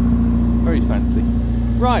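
1995 Rover Mini Cooper 1.3i's 1275 cc A-series four-cylinder engine idling steadily.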